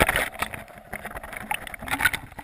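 Water sloshing around a GoPro camera as it is hauled up through the water in a net, with irregular knocks and crackles as the camera shifts against the net.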